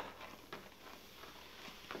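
Faint stirring of a baking soda and salt solution with a spoon in a plastic measuring jug, with a couple of light knocks of the spoon.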